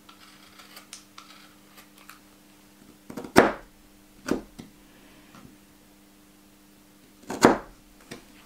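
A woodworking gouge pressed by hand down through the edge of thick leather onto a plastic cutting board, trimming the edge where three glued layers meet. It makes a few short, sharp cutting sounds: a loud one about three seconds in, two smaller ones just after, and another loud one near the end, with faint ticks early on.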